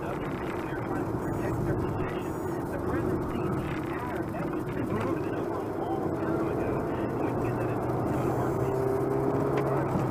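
Steady road and engine noise of a car driving, heard from inside the cabin, with indistinct talk underneath.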